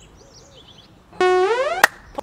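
A synthesized comedy sound effect: a buzzy tone that sounds suddenly about a second in, holds briefly, then slides sharply upward and cuts off with a click.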